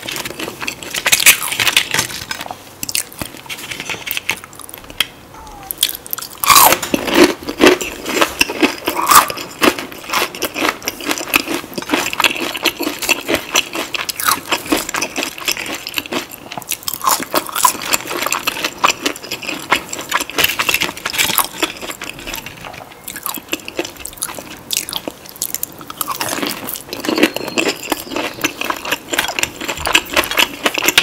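Close-miked eating sounds: crunchy fried food (Popeyes fried chicken, shrimp and fries) being bitten and chewed, a dense run of crackling crunches with short lulls, loudest from about six seconds in.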